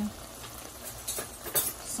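Sliced peppers, onions and tomato frying in oil in a stainless steel pan: a soft, steady sizzle, with a few light clicks a little past the middle.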